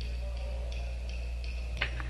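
Steady low electrical hum on an old studio session tape, with faint thin high tones over it and a single sharp click near the end.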